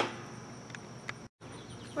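Insects droning steadily in the background, a faint high-pitched tone; the sound cuts out completely for a moment just over a second in.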